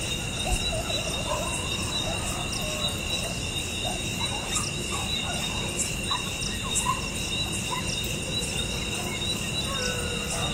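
Night insects trilling steadily in an even, high-pitched chorus, with faint scattered short calls beneath it.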